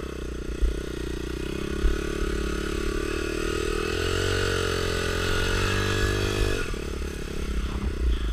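Honda XR dirt bike's four-stroke single-cylinder engine running while being ridden slowly. The revs climb gradually through the middle, then drop suddenly a little before the end as the throttle is closed.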